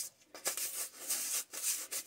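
Stiff-bristled dish brush scrubbing a juicer's mesh strainer basket in a bowl of water: a scratchy rasp in several short strokes.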